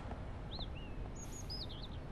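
Small birds chirping: a quick series of short, high calls starting about half a second in, over a low, steady outdoor background rumble.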